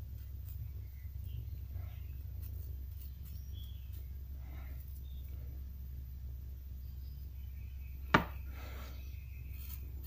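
Faint rustling and crinkling of a thin sheet of metal leaf as it is brushed and pressed onto a lure, over a steady low hum, with one sharp click about eight seconds in.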